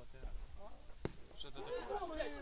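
A football kicked once, a single sharp thud about a second in. Men's voices call out on the pitch near the end.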